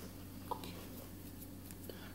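Quiet room tone with faint handling of a smartphone in the hands, and one small click about half a second in.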